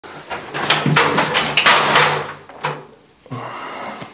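A run of knocks and a clatter of hard equipment being dropped, over about two seconds; it sounded expensive.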